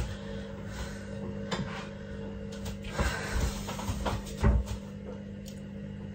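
A few scattered knocks and clatters of kitchen crockery being handled as ceramic measuring cups are fetched from a cupboard, over a steady low hum.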